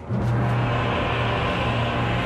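Orchestral music from a 20th-century opera: after a brief lull, the orchestra comes in loudly just after the start and holds a steady low note beneath a dense upper texture.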